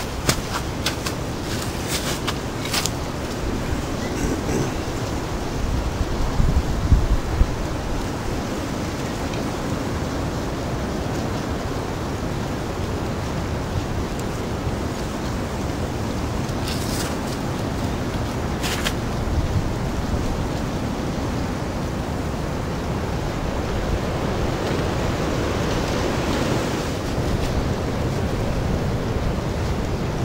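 A steady rushing noise, with a few sharp crackles of dry wood shavings and tinder being handled in the first few seconds and again after about 17 seconds. Near the end, breath is blown steadily into a tinder bundle to nurse a bow-drill ember into flame.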